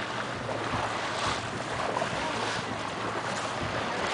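Water rushing and splashing along the hull of a moving boat, with wind buffeting the microphone and a steady low hum underneath.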